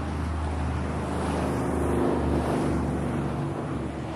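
A motor vehicle passing on the road, its engine noise swelling to a peak about halfway through and then fading, over a steady low rumble of traffic and wind.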